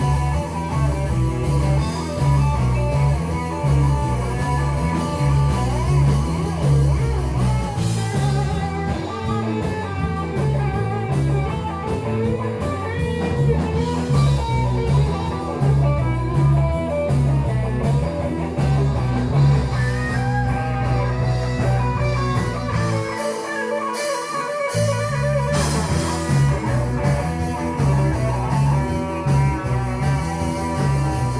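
Live rock band playing a guitar-led passage with bass and drum kit, heard from the dance floor. About two-thirds of the way through, the bass and drums drop out for a couple of seconds, then the full band comes back in.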